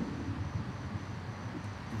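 Steady outdoor background rumble and hiss, with no distinct sound events.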